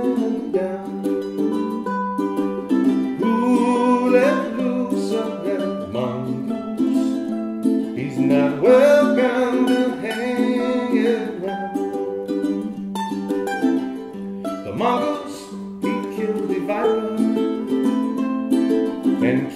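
Two ukuleles playing together in an instrumental break of an upbeat strummed song, steady chords with melody notes picked over them.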